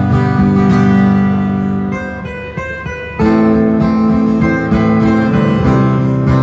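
Two acoustic guitars playing chords together in an instrumental passage, with no singing. The sound eases off about two seconds in, and a new chord comes in loudly just after three seconds.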